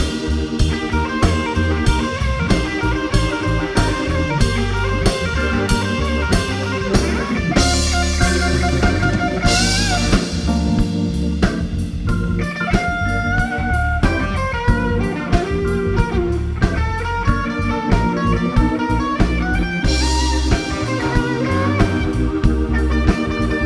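Live blues band playing an instrumental passage: an electric guitar lead with bent notes over bass, a steady drum beat and keyboard, with cymbal crashes about eight seconds in and again near the end.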